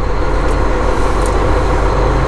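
Volvo semi truck's diesel engine running steadily as the truck rolls slowly across a lot, heard from inside the cab.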